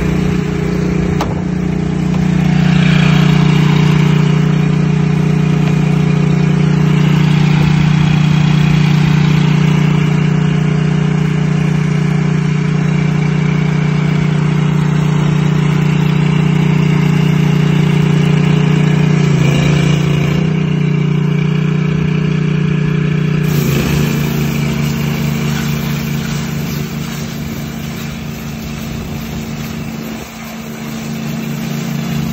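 Honda GX630 V-twin engine running steadily, driving the trailer's pressure-washer pump. Its note shifts about twenty seconds in and changes again a few seconds later.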